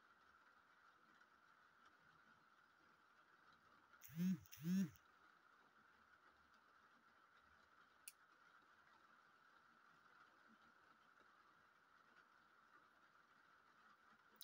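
Near silence: quiet room tone with a faint steady hum. About four seconds in, a woman gives a brief two-note vocal sound, and a faint single click follows about four seconds later.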